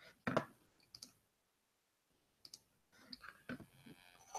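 Clicks of a computer mouse and keyboard: one louder click shortly after the start, then a few faint scattered ticks.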